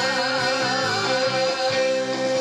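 A male vocalist singing a Korean song into a handheld microphone over instrumental band accompaniment, holding a note with a wavering vibrato.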